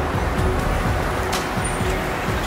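Road-traffic sound effect: a steady rumble of car engines and passing traffic, laid under background music.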